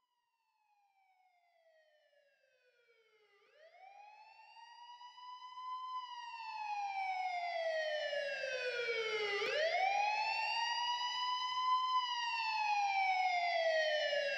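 Police siren wail in a hard techno track: one tone sliding slowly down and quickly back up, about six seconds a cycle. It fades in from almost nothing and grows loud over the first several seconds, with a faint low hum under it later.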